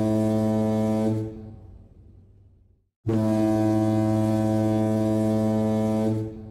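Foghorn blasts: a low, steady note rich in overtones ends about a second in and dies away over a second or so, then after a short silence a second identical blast starts about three seconds in and holds.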